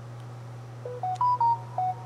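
Samsung Galaxy S22 Ultra giving a short electronic tone as a USB SD card reader is unplugged from its charging port: five quick beeps that climb and then fall in pitch, about a second in, with a faint click.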